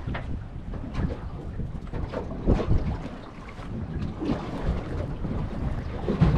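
Wind buffeting the microphone on a boat in choppy seas, with the wash of water around the hull and a few brief knocks, the loudest about two and a half seconds in.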